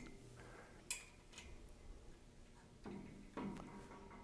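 Mostly quiet, with a few faint clicks and soft knocks of screws being tightened by hand into a standing desk's cross support: a sharp click about a second in, a fainter one just after, and two soft knocks near the end.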